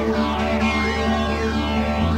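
Instrumental jam-band music from electric guitar, bass and keyboards, over a held low bass note, with a sweeping sound in the upper range that rises and falls about once a second.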